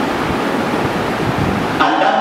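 A steady, even hiss-like rushing noise with no speech.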